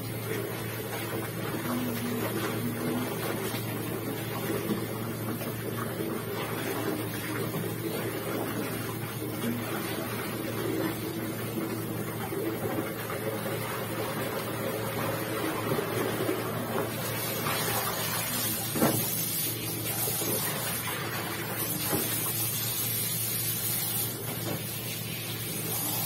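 Wet clothes being scrubbed, squeezed and sloshed by hand in a plastic basin of water, over a steady low hum, with a sharp click about two-thirds of the way through.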